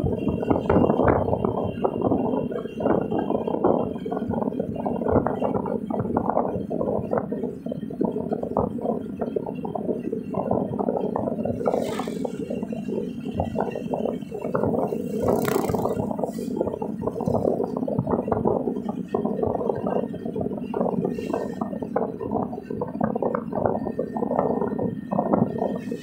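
Road and cabin noise inside a moving car, with a continual irregular rattling and scraping, as picked up by a dashboard-mounted phone.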